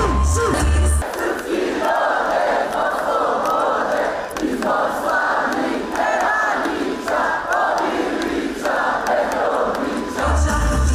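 A large crowd of voices chanting and singing together in short repeated phrases, loud throughout. It opens with a brief low bass hit from a TV channel's logo sting.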